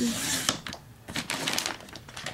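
A plastic page protector being cut on a Fiskars sliding paper trimmer: a brief scraping slide of the cutting head at the start, then crinkling of the plastic sheet and sharp clicks about a second in.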